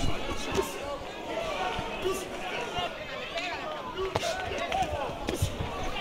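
Boxing punches landing as sharp thuds, a few times (about half a second in, near four seconds and again near five and a half), over arena crowd noise and indistinct shouting voices.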